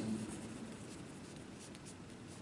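Pen writing on paper: faint scratching of the tip as a word is written out.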